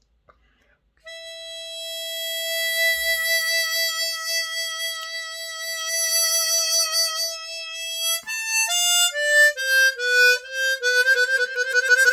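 Chromatic harmonica holding one long single note for about seven seconds, its pitch wavering slightly partway through, then a quick run of short notes stepping down in pitch.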